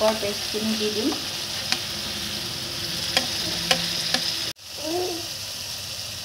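Onion and spice paste frying in hot oil in a kadai, a steady sizzle, with a steel spatula stirring and clicking against the pan a few times. The sound cuts out briefly about three-quarters of the way through.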